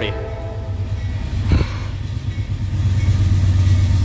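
Norfolk Southern diesel freight locomotives approaching with a steady low engine rumble that grows louder near the end, with one brief bump about one and a half seconds in.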